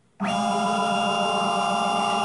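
Stepper motors of a small CNC router, run by Leadshine DM542 digital drives, jogging an axis: a steady multi-tone whine that starts suddenly about a quarter second in and holds an even pitch and level.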